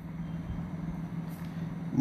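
A steady low hum of room background noise, with faint scratching of a ballpoint pen writing on paper.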